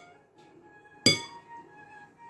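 A metal spoon clinks against the rim of a glass mixing bowl about a second in, a sharp strike with a bright ring that dies away. The ring of an earlier clink is fading at the start.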